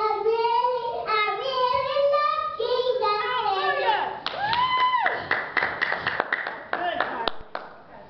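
A young girl singing a gospel praise song into a microphone. About halfway through, the singing gives way to a few seconds of hand clapping, with a held note under it.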